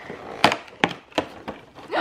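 Cardboard advent-calendar door being pried open by fingers: a few sharp snaps and small tearing clicks as the perforated cardboard gives way.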